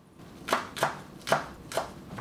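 Cleaver chopping green onions on a wooden cutting board: four sharp knife strikes, about two a second.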